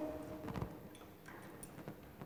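A few faint knocks and clicks as a brass cylinder is lifted off the pan of a laboratory balance.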